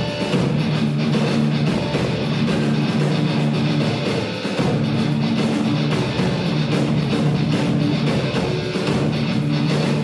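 Rock band playing live: electric guitars, bass guitar and drum kit, with no vocals. The lowest notes drop out briefly about four and a half seconds in, then the full band carries on.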